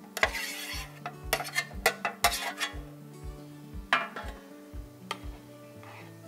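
A metal spoon clinking and scraping as raw shrimp are pushed off a metal sheet pan into a pot of tomato sauce and stirred in, with a string of sharp clinks in the first half and a few more later. Background music with a steady low beat runs underneath.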